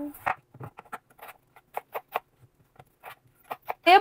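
Kitchen knife cutting a potato on a bamboo cutting board: a run of short, irregular taps as the blade meets the board.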